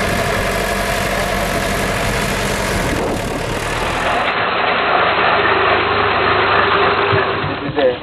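Crawler bulldozer's diesel engine running steadily for the first three seconds or so, then the sound cuts to a steady noisy hiss, with voices coming in near the end.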